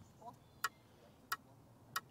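Fingers tapping and flicking a travel tripod: three sharp clicks, about two-thirds of a second apart.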